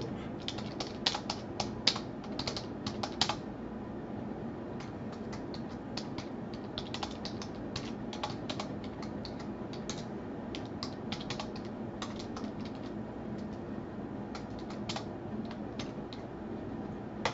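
Typing on a computer keyboard: irregular runs of key clicks, with short pauses between bursts, over a steady low background hum.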